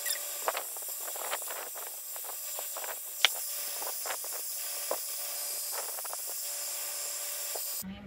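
Heat gun blowing a steady hiss over wet epoxy resin, with scattered light clicks and one sharper click a little over three seconds in.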